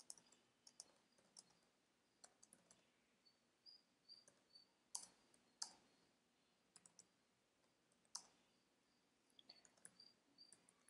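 Faint computer-keyboard typing: scattered, irregular keystroke clicks.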